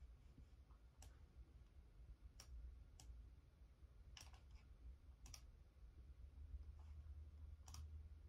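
Keys on a Logitech keyboard pressed one at a time: six faint, separate clicks at uneven gaps, over a low steady hum.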